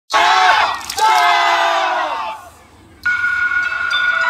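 Yosakoi dancers shouting together twice, a short call and then a longer one falling in pitch. After a brief pause, music starts about three seconds in with a held chord.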